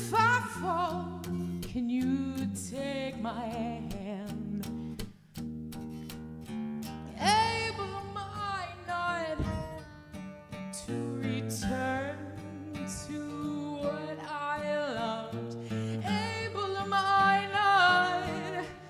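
A woman singing a slow song with a strong vibrato on her held notes, over guitar accompaniment. About seven seconds in she sings a loud, long high note.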